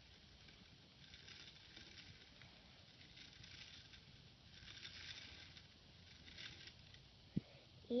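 Faint handling noise of a small plastic toy engine moved by hand on a wooden surface: several short spells of light scraping, and a single click shortly before the end.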